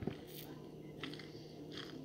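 Faint mouth sounds of someone tasting a berry smoothie: a few short, soft sips and swallows.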